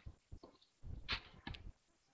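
A few faint, scattered clicks and taps from a computer keyboard and mouse.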